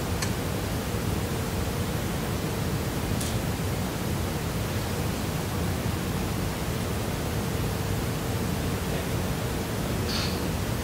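Steady hiss of room tone and recording noise from the lecture-hall microphones, with a faint steady hum and two brief faint ticks.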